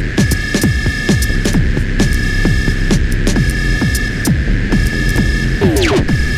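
Electronic music played on analog and modular hardware synthesizers and sequencers: a steady high drone tone over a rhythm of short sounds that fall in pitch, with clicks in the highs.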